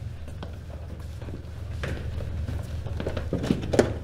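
Room tone with a steady low hum, scattered footsteps and shuffling as people walk through a doorway, and a brief indistinct vocal sound near the end.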